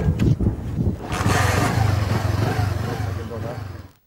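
A motorcycle engine running at idle, with a steady low rumble that fades out near the end.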